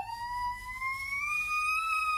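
A toddler's single long, high-pitched cry that slowly rises in pitch and breaks off after about two seconds.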